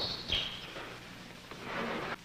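Hiss and a steady low hum of an old film soundtrack, with a few faint clicks.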